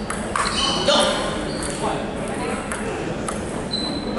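Celluloid-type table tennis ball clicking off paddles and the table in a rally, a handful of sharp, separate ticks.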